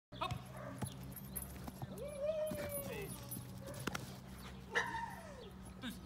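Rottweiler whining eagerly while held before being sent over a jump: one long drawn-out whine about two seconds in, and a shorter whine falling in pitch near the end.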